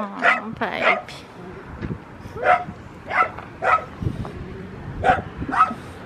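A dog barking in short, separate barks, roughly one or two a second.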